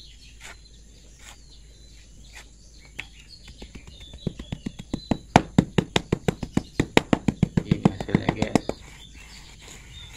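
Rapid knocking of a hand-held tamping block pounding sand-cement mix down into a wooden block mould to compact it. The knocks come about six a second, starting a few seconds in and stopping shortly before the end.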